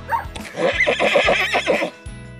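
A horse's whinny, a recorded sound effect of the kind the tiptoi pen plays when touched to a toy horse figure, starting about half a second in and lasting over a second, over soft background music.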